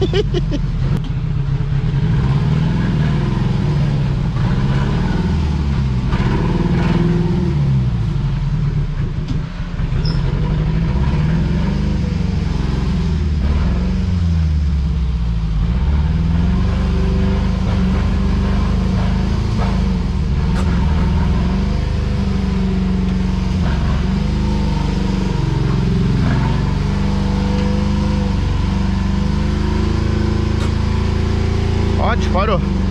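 Ford Ka's small four-cylinder engine running under load, its revs rising and falling over and over as the car is driven, heard from inside the cabin.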